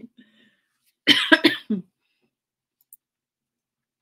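A woman's short cough, about a second in, with two or three quick sharp pushes.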